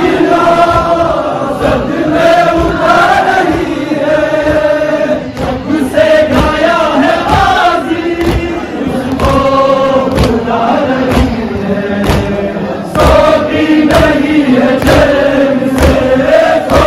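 A crowd of men chanting a noha, a Shia lament, in unison. Sharp slaps of chest-beating (matam) keep time, about once a second.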